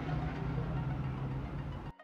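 A steady low mechanical hum with a hiss, like a small motor running, that cuts off abruptly near the end.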